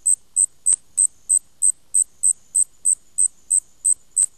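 Cricket chirping, a steady run of short high chirps about three a second: the stock comedy 'crickets' sound effect for a blank, empty silence.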